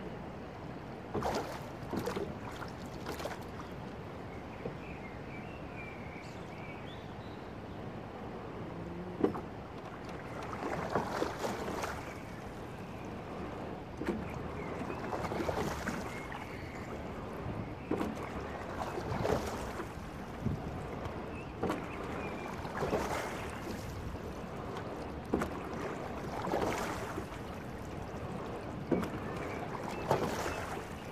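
A single sculling boat being rowed: water rushes along the hull and around the oar blades, swelling with each stroke about every three to four seconds from about ten seconds in. A few sharp knocks come in the first ten seconds.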